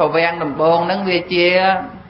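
A man's voice speaking continuously in Khmer, a Buddhist monk giving a sermon into a microphone.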